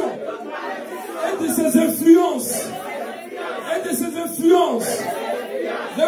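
Several voices praying aloud at once, overlapping so that no words stand out.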